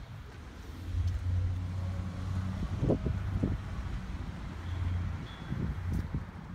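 A vehicle engine running with a steady low hum that swells about a second in and fades after about five seconds, with two short thumps near the middle.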